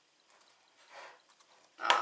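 A metal spoon stirring a thick yogurt, berry and protein-powder mixture in a glass bowl: a faint soft swish around the middle, then a brief louder sound just before the end.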